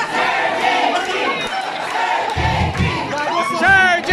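Several voices singing and shouting together with a live rock band. The band's low end, bass and drums, comes in heavily a little past halfway.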